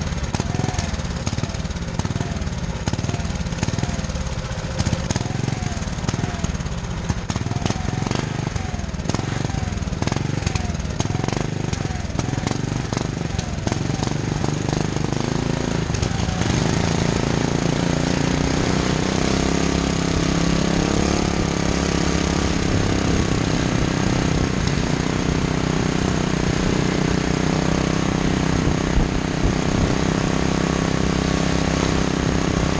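Small gas engine of a motorized go-bike running while riding. For the first half its pitch rises and falls again and again, then from about halfway it holds a steadier note.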